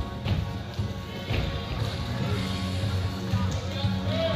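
Music playing steadily, with a sharp thump shortly after the start and another about a second later.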